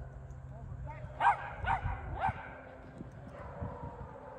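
A dog barking three times in quick succession, a little over a second in, each bark short and high-pitched.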